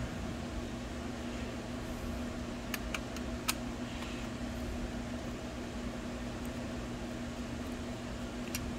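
Steady whir of computer cooling fans with a low hum. A few faint ticks of a screwdriver on small screws come between about three and three and a half seconds in.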